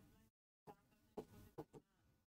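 Near silence from a noise-gated microphone, with only a few faint, brief sounds about a second in.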